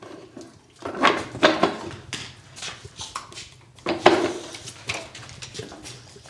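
Clattering knocks of metal and wood parts of a ukulele side-bending jig being handled as a second ram is mounted, in two bursts: one about a second in and another about four seconds in.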